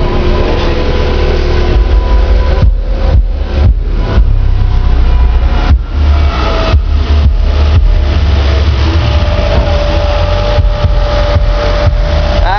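Two 15-inch Memphis Mojo subwoofers in the trunk pounding out bass-heavy music at high volume, loud enough to overload the microphone. The sound dips out briefly several times.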